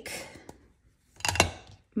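Craft supplies being handled and moved about on a work mat: a soft rustle, a small click, then a brief clatter a little past halfway.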